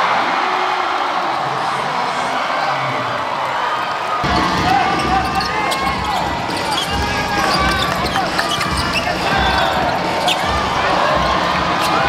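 Live basketball game sound: the ball bouncing on the hardwood court, sneakers squeaking and a crowd in a large arena hall. The sound grows fuller and busier about four seconds in.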